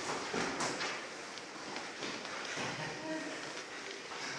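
Cloth rustling and soft knocks of jiu-jitsu grappling in gis on foam mats, busiest in the first second. Faint voices can be heard behind it.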